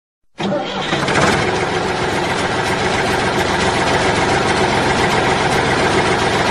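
Tractor engine starting about half a second in, then running steadily.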